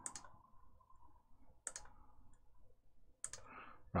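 Computer mouse clicking three times, about a second and a half apart, placing the corners of a wire in schematic-drawing software.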